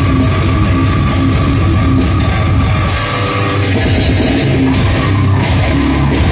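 Slam death metal band playing live: heavily distorted guitars, bass and pounding drum kit, with the vocalist growling into the microphone. A high held note rings over the band until a little past halfway.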